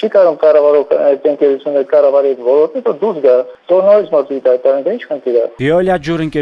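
Speech only: a man talking continuously over a telephone line, his voice thin and cut off in the highs. Near the end a clearer, full-range voice takes over.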